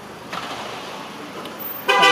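Steady background noise, then near the end a sudden loud horn-like tone.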